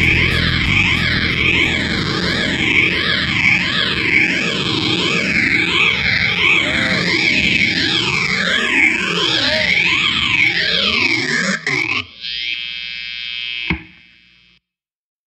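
Instrumental outro of a rock song: distorted electric guitar through an effects unit, its sound sweeping up and down in pitch over and over. The music cuts off abruptly about twelve seconds in, leaving a quieter steady hum that ends with a click.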